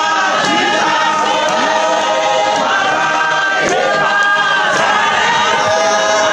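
A large church congregation singing together, many voices overlapping in a loud, steady chorus.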